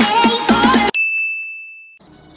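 Background music with a steady beat cuts off about a second in, followed by a single high-pitched ding that rings on and fades away: a notification-bell sound effect.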